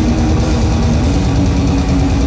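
Death metal band playing live at full volume: distorted electric guitar riff and bass over fast, dense drumming.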